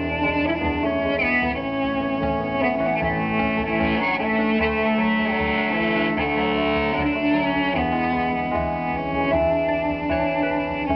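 Live instrumental passage with no vocals: two keyboards playing held, sustained chords that change every second or so.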